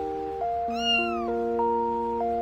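A single cat meow about a second in, falling in pitch at its end, over background music of steady held notes.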